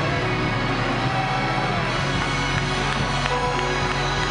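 Live gospel church music in the sanctuary: a steady run of held chords, with no singing.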